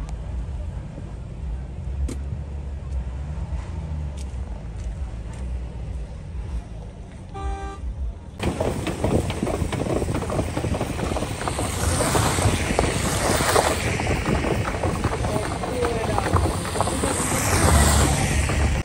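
Car driving on a snowy road with snow chains on its tyres: a low engine and road rumble, a short car-horn toot about seven and a half seconds in, then from about eight seconds a much louder, dense rattling clatter and hiss of the chained tyres on the snow and slush.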